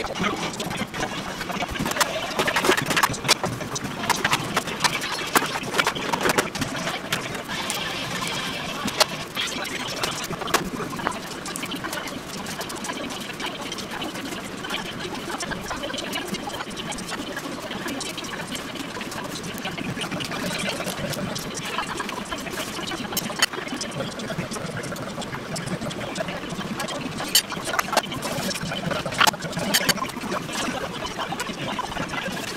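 Kitchen clatter: irregular clicks and knocks of dishes and plastic bento boxes being handled, over a steady noisy background with faint voices.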